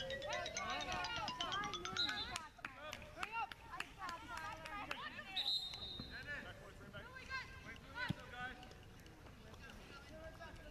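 Voices calling and shouting from players and spectators on an open soccer field, with a brief, steady high whistle blast about five and a half seconds in.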